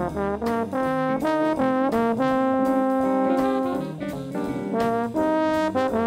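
Jazz horn section of tenor saxophone, trumpet and trombone playing a line together over piano, guitar, bass and drums, moving through quick notes with one long held note in the middle.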